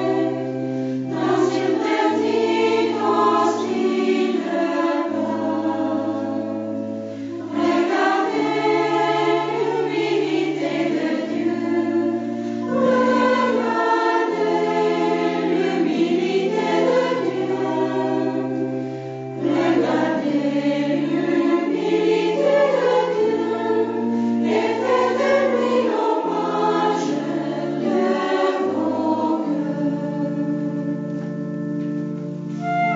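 A choir singing a slow hymn over long held low notes that shift every second or two, with short pauses between phrases about 7 and 19 seconds in.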